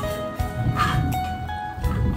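Background music of steady held notes, with a short yelp a little under a second in.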